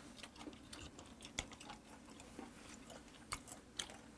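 Faint eating sounds at a table: chewing, with scattered light clicks of metal chopsticks against dishes, a few sharper ones in the second half.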